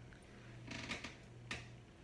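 Soft, brief rustle of a small makeup brush on the cheek about three-quarters of a second in, then a single light click, over a low steady hum.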